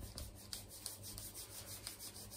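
A hand rubbing a small plastic beaker quickly back and forth: a faint, rapid swishing of palm on plastic, several strokes a second.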